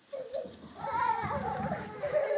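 A young child's high, wavering squeal while sliding down carpeted stairs in a sleeping bag, with low bumping from the bag going over the steps about a second in.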